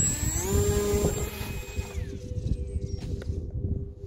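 Small brushless electric motor and propeller on an RC glider spooling up with a rising whine, then running at a steady high-pitched buzz. About halfway through the upper part of the whine drops away and a lower, fainter hum carries on.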